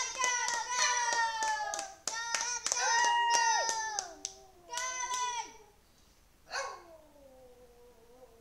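Lhasa apso howling ("singing") in a series of drawn-out, wavering calls, the last one, a little past the middle, gliding down in pitch. Sharp clicks or claps run through the first half.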